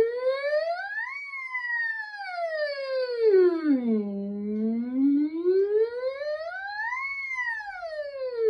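A woman's voice doing a vocal siren on a hummed 'ng', one unbroken glide from low to very high and back. It rises to its top about a second in, sinks low again around four seconds, climbs back to the top about seven seconds in and is sliding down near the end.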